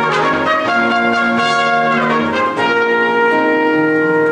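Trumpet playing a melody of held notes over sustained accompaniment in a choral anthem.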